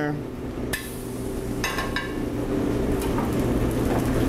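A metal spatula and skillet clinking a few times, with short ringing knocks about a second in, a quick cluster in the middle and one more near the end, over a steady low hum.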